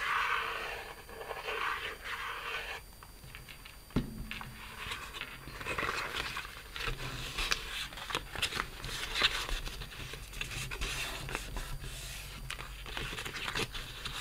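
Cardstock being glued and folded by hand: the nozzle of a glue bottle drawing across the paper for the first few seconds, a sharp tap about four seconds in, then a run of short rubbing and scraping sounds as the folded pleats are pressed together.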